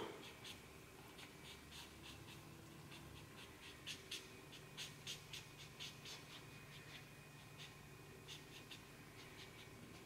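A black marker drawing on paper: short, irregular scratchy strokes, faint, with a few slightly louder strokes in the middle and near the end.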